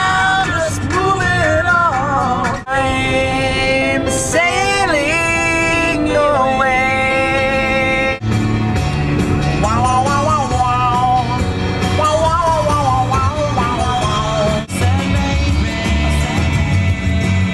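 A rock song playing on the car radio, with a man singing loudly along to it; the band's low end gets heavier about eight seconds in.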